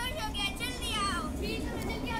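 A child's high-pitched voice crying out in drawn-out phrases that slide downward in pitch, with a steady low rumble underneath.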